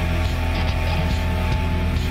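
A live electro-rock band playing an instrumental stretch without vocals: electric guitar, drums and keyboards over a steady, heavy bass.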